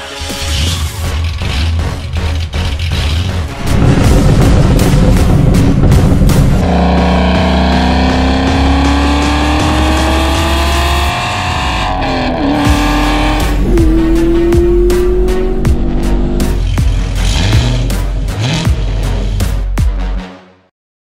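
Background music with a heavy beat mixed with an engine accelerating through its exhaust: its pitch climbs for several seconds, falls briefly about halfway through, then climbs again.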